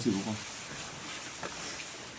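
Soft rustling of a long winter coat's fabric as it is taken off and handled.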